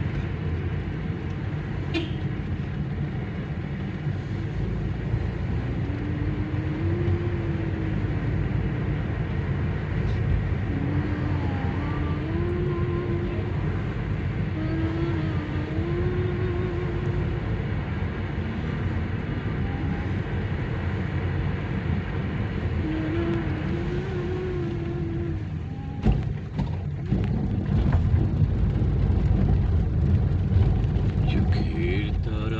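Steady low rumble of a car's engine and tyres heard from inside the cabin while driving. A faint wavering tone rises and falls now and then in the middle, and the rumble dips briefly and then grows louder near the end.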